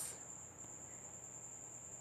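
Faint background with a steady high-pitched tone and low hiss.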